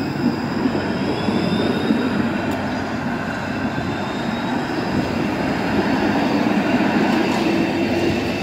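Bombardier Flexity Outlook low-floor streetcar running past close by on the tracks: a steady rumble of wheels on rail, with a faint high whine through the middle.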